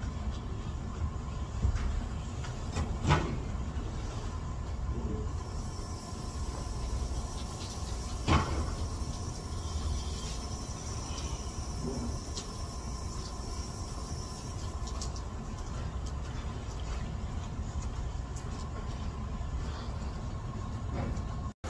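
Steady low rumble and hum of an indoor pool room, with two sharp knocks about three and eight seconds in, the second the louder, and a faint high whine through the middle.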